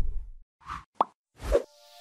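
Animated logo sting sound effects: a low sound fades out, then come three short pops about half a second apart, the middle one sharp with a brief falling ring. A held musical chord begins near the end.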